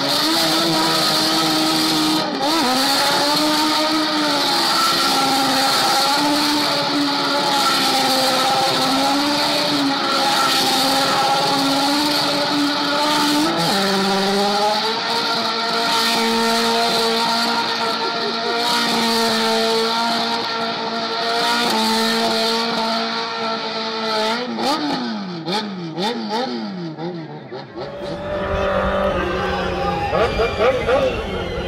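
A car doing a long burnout: the engine held at high revs with the rear tyres screeching, its pitch stepping up about fourteen seconds in. Near the end the engine is revved up and down a few times as the burnout winds down.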